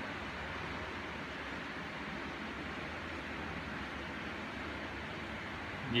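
Several household electric fans running together: a steady, even rush of moving air.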